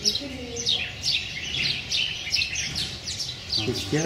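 Small birds chirping busily: short, high chirps that fall in pitch, several a second, without a break.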